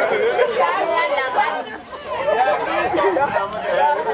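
Speech only: several people talking at once, their voices overlapping.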